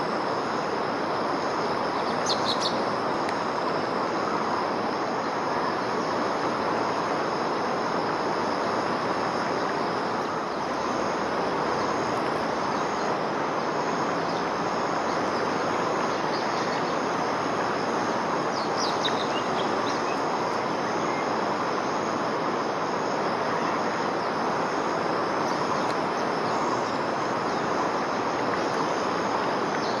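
A steady rushing outdoor background with a continuous high insect drone over it, broken twice by brief high bird calls: one about two seconds in, the other just before the twenty-second mark.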